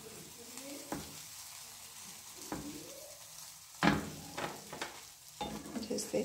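Butter-coated grilled cheese sandwiches sizzling steadily in a hot ridged grill pan on medium-low heat, broken by about five light knocks as the sandwiches are handled and turned on the pan, the loudest about four seconds in.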